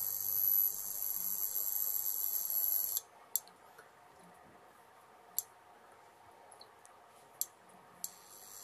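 Portable induction cooktop running with a steady electrical hum and high whine that cuts out about three seconds in. After that come three faint sharp clicks, about two seconds apart, as it cycles at a low setting.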